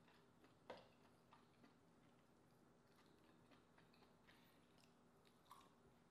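Faint, scattered clicks and light scrapes of a spoon and fingers working meat from a green-lipped mussel shell, with one louder click under a second in.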